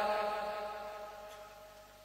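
The tail of a man's chanted, held syllable dying away steadily over about two seconds until it is nearly silent.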